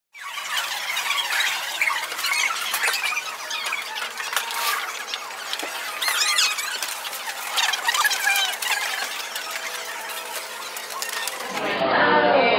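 Busy din of shoppers in a crowded store: constant clatter with many overlapping high-pitched squeals and squeaks, starting suddenly at the cut and running at an even level until another cut near the end.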